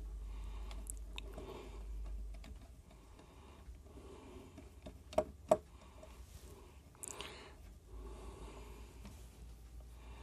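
Faint scratching and a few light clicks from a small screwdriver turning the trimmer potentiometer on a DC-DC buck converter board, with two sharper clicks in quick succession about five seconds in.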